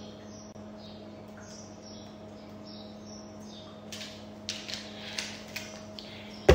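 Small birds chirping faintly, short high chirps about twice a second, over a steady low hum. In the last two seconds come a few crackles from a plastic water bottle being handled.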